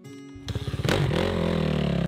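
Dirt bike engine revving over background music. It comes in about half a second in and rises in pitch near the middle.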